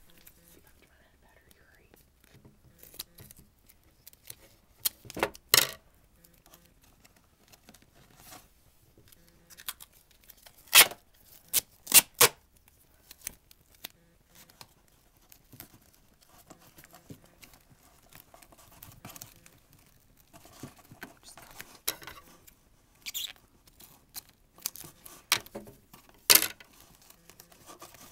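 Duct tape being pulled from the roll, torn or cut, and pressed onto a cardboard box. Low rustling handling noise is broken by a handful of sharp, short rips and snips.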